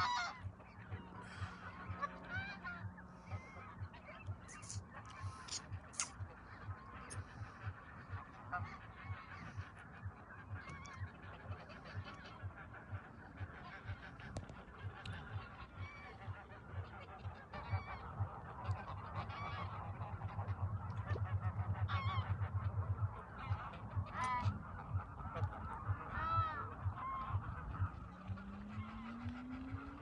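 A flock of greylag geese honking, many short calls overlapping and repeating, some loud and close.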